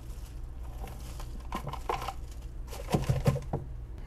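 Crinkling and crumbling as a potting-soil root ball is worked loose from a flexible plastic nursery pot over a plastic bag, with bits of soil falling onto the bag. The sounds come in small irregular clusters over a steady low hum and are busiest in the second half.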